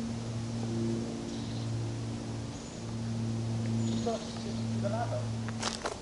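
Steady low electrical hum with a few overtones, swelling and easing slightly, from the pole-mounted transformer beside the tower. Faint bird chirps come through now and then.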